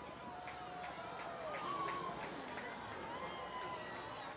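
Outdoor crowd chatter: many people talking at once, faint and indistinct, with no single voice standing out.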